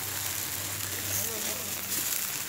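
Marinated beef sizzling on a hot flat-top griddle, a steady hiss.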